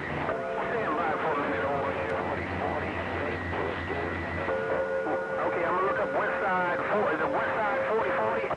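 CB radio receiving skip on the 11-metre band, several stations keying up at once: garbled, overlapping voices with steady whistling tones from their carriers beating together. One whistle drops out and another, lower one takes over about halfway through.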